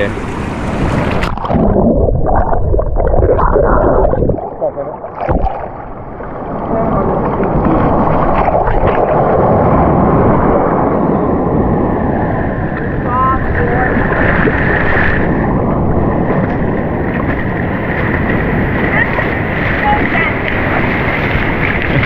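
Surf washing in over a sandy beach, with wind buffeting the microphone.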